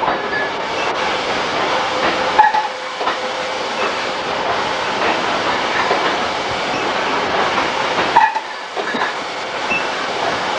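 A wine bottling line running: the labelling machine's steady mechanical clatter mixed with many small clicks of glass bottles moving along the conveyor. It eases off briefly a little after eight seconds.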